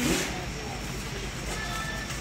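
Supermarket background sound: a steady low hum and rumble with faint distant voices, and a brief rustle of the handheld phone at the start.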